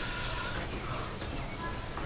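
Low, steady background noise with faint, indistinct voices.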